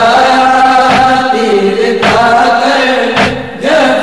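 Urdu nohay, a Shia mourning lament, chanted in long held melodic lines over a steady beat that strikes about once a second, with a short dip near the end.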